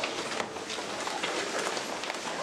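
Audience applauding: many hands clapping steadily and densely.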